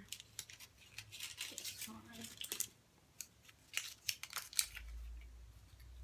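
Paper candy cup and wrapper crackling and rustling as a boxed chocolate is picked out and unwrapped by hand, in a run of quick, sharp crackles. A low rumble comes in near the end.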